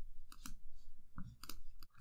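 Several short clicks from a computer mouse, some in quick pairs.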